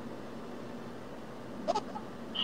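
Quiet room hiss with a faint steady hum. Near the end comes one brief high-pitched vocal sound, a short squeak that rises in pitch.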